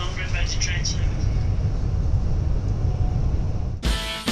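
Steady low rumble of a moving passenger train, heard from inside the carriage, with a voice talking over it for about the first second. Music comes in suddenly just before the end.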